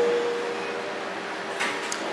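Room tone of a small amplified hall in a pause between spoken sentences: a steady hum with a faint held tone, and one short soft hiss near the end.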